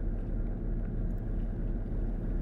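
Steady low rumble of a boat's engine under way, with wind on the microphone.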